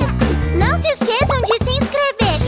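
Short, cheerful children's music jingle with a high, swooping cartoon character voice over it and tinkling chimes.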